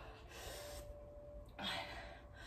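A woman breathing hard from exertion while lifting dumbbells, with one sharp, breathy gasp about one and a half seconds in.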